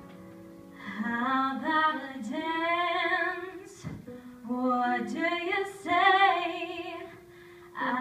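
A solo female voice singing a musical-theatre ballad, coming in about a second in over a soft piano accompaniment, in phrases with short breaks between them.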